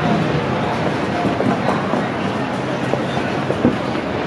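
Busy city street ambience: a steady rumble of traffic with indistinct voices of passing pedestrians.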